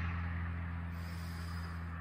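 Low, steady rumble of road traffic, slowly fading away.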